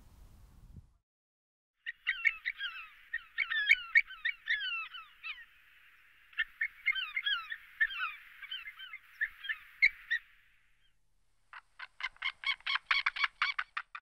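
Bird calls: a long run of quick, high notes that bend in pitch, then, after a short gap near the end, a rapid, evenly spaced series of sharp calls at about seven a second.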